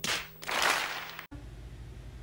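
A short rushing burst of noise from an edited-in film clip, cut off abruptly just over a second in, followed by faint room tone.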